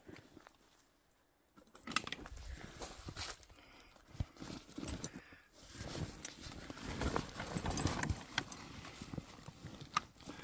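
Hands rummaging in a fabric tool bag: rustling and scattered light clicks and knocks of tools being moved about, starting about two seconds in.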